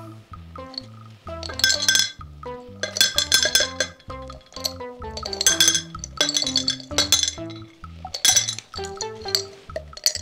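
Hard candies poured from a glass jar, clinking and rattling onto a plate in about five short bursts, over background music.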